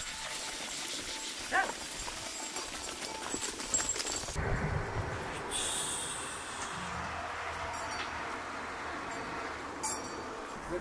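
A flock of goats and sheep moving along a stony path, with a single short animal call about a second and a half in.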